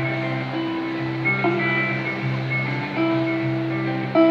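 Live band playing a slow instrumental passage led by guitar: long held notes over a steady low bass line, the notes changing every second or so.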